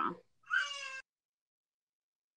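Video-call audio breaking up on a glitching connection. About half a second in comes a single half-second garbled sound with a flat, unchanging pitch that stops abruptly, then the audio drops out to dead silence.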